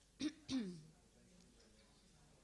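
A person clearing their throat: two short vocal bursts with falling pitch, about a third of a second apart, early on. Low room noise follows.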